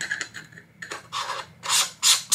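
A 72 mm screw-on UV filter being twisted onto the front threads of a Sony 16-35mm f/4 lens. The threads scrape in a few short strokes, the loudest near the end.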